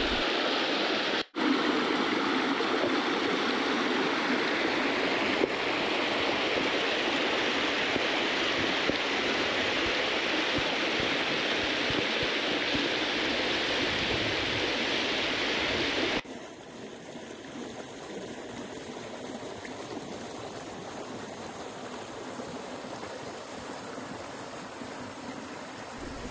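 Creek water rushing steadily through a narrow rock channel in a cascade. About two-thirds of the way through it cuts suddenly to a quieter, softer flow of a small cascade spilling into a rock pool.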